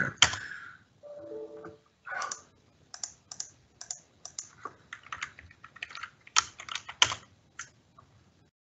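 Typing on a computer keyboard: a quick, irregular run of keystrokes. A brief low tone of a few pitches sounds about a second in.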